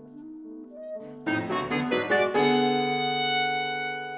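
Clarinet and grand piano playing together: a soft, slow line, then about a second in a loud, rapid flurry of notes, settling on a long held chord that slowly fades.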